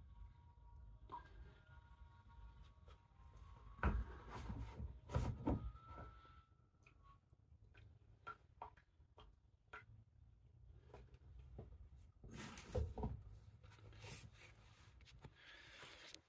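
Quiet room with a few handling knocks and clunks, the loudest about four and five seconds in and again about 13 seconds in, as the sludge-coated magnetic rods of a powerflush filter are lifted and set down.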